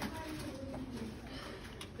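A person's low humming voice, drawn out and drifting slightly in pitch, with no clear words.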